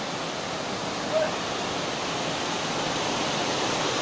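Steady rush of water, an even hiss that grows slightly louder toward the end, with a brief faint sound about a second in.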